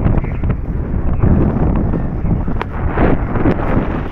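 Wind buffeting the microphone: a loud, low, steady rush of wind noise, with a few faint knocks.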